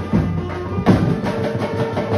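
Brass band drum section playing a beat on large bass drums and metal-shelled side drums, with a heavier stroke about a second in. A horn note is held under the drums from then on.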